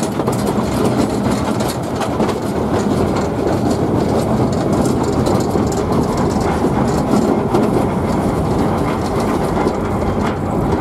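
A 2 ft gauge 0-4-2 tank steam locomotive and its train running along the line, heard from the footplate: a steady, even rumble and clatter with no pauses.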